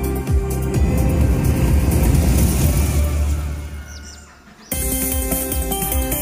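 Slot machine sound effects: a low rumbling whoosh plays under the volcano animation and fades away about four and a half seconds in. Then a bright electronic chime melody starts suddenly as the win meter counts up.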